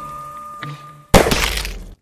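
A single loud pistol gunshot sound effect about a second in, with a long crashing tail that cuts off abruptly. Before it, a film-score drone with a held high tone.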